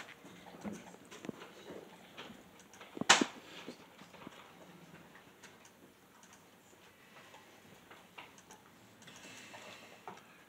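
Scattered faint clicks of a computer mouse as files are browsed, with one sharp, much louder click about three seconds in.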